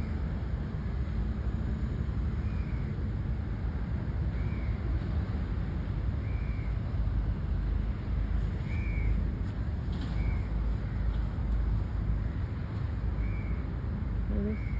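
A bird repeating a short, arched call about every two seconds over a steady low rumble.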